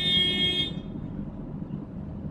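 A single steady horn-like tone, flat in pitch, that stops about three-quarters of a second in, leaving only low background noise.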